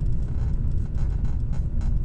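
Steady low rumble of a car running, heard inside the cabin.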